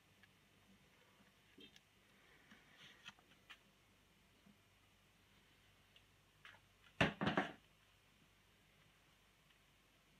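Quiet room tone with a few faint ticks, broken about seven seconds in by a quick run of sharp knocks lasting about half a second.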